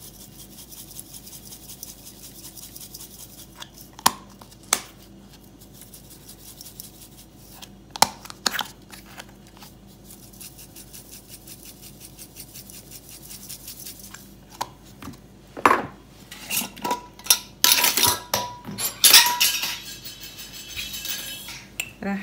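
Handheld twist spice grinder grinding seasoning into a bowl: a fast, fine crackle in two long runs, with a few sharp knocks between them. Over the last several seconds come louder clinks and knocks of spice jars and a metal spoon.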